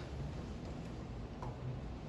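Chalk writing on a blackboard: a few faint, light ticks as the chalk strikes and moves on the board, over a low steady room hum.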